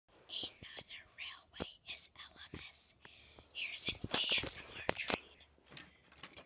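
A person whispering in short hissy bursts, with several sharp clicks scattered through.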